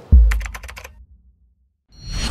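Edited chapter-transition sound effect: a deep bass hit, overlaid with a quick run of about half a dozen sharp typing-like clicks.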